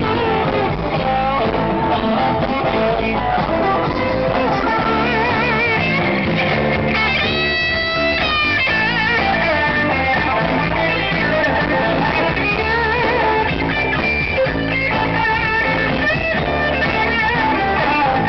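Live band music led by an electric guitar solo on a Stratocaster-style guitar, over bass guitar. The lead notes are bent and shaken with vibrato, with one high note held with vibrato about halfway through.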